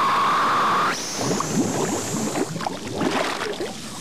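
Underwater sound: a steady hiss that cuts off about a second in, then rushing water and bubbling as air boils up through the water.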